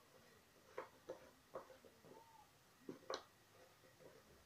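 Near silence: room tone with a few faint, scattered ticks.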